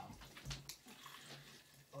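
Fizzy soft drink poured from a plastic bottle into a plastic blender jug: a faint, steady pour with the crackle of fizz.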